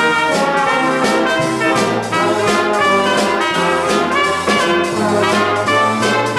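Small jazz band playing a tune, with trumpet, saxophone and trombone playing the melody together over a rhythm section. A drum kit keeps a steady beat on cymbals, and a low line moves in steps underneath.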